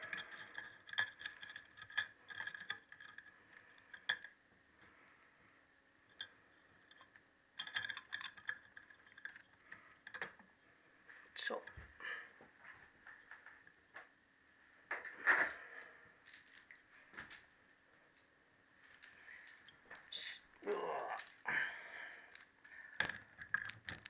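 Light metallic clicks and clinks of steel valve springs and spring caps being handled and seated by hand over the valve guides of a Triumph T120R cylinder head. The clicks come in scattered clusters with quieter gaps between.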